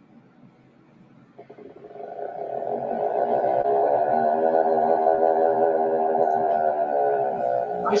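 Recorded seabird call played over a live stream: one long, steady, droning call that fades in about two seconds in and holds a low, even pitch for several seconds.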